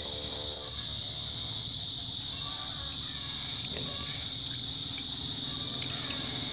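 Steady high-pitched chirring of insects, typical of crickets, holding one even tone throughout.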